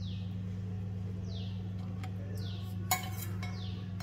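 A steel container clinks once against a ceramic bowl about three seconds in while curd is poured from it. Under it runs a steady low hum, and a short falling bird chirp repeats about once a second.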